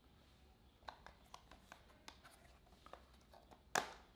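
Faint clicks and taps of hands handling a clear plastic Meiho lure box, then a sharper snap near the end as its latch is flipped open.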